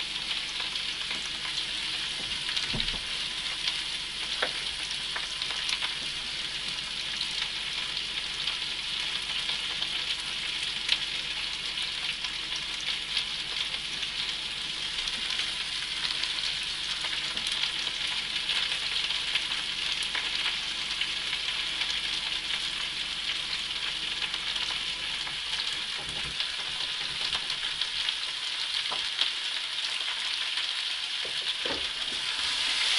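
Potatoes frying in a pan: a steady sizzle with scattered crackling spits.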